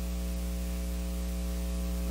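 Steady electrical mains hum: a low, even buzz with a stack of evenly spaced overtones, carried on the microphone and sound-system feed.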